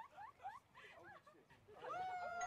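Faint, high-pitched squeaky giggling: a quick string of short rising squeaks in the first second, dying away toward the end.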